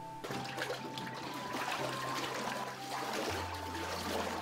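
Water sloshing and splashing in a vat of washi pulp solution stirred with a bamboo stick, starting about a quarter-second in. Soft background music runs underneath.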